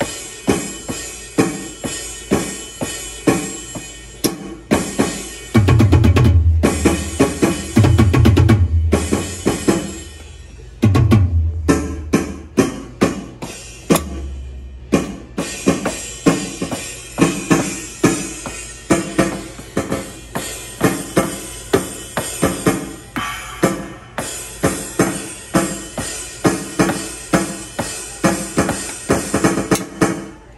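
Alesis Strike Pro electronic drum kit played by a small child: a steady run of drum and cymbal hits about two a second, with a few heavy, deep bass-drum thuds about six to eleven seconds in.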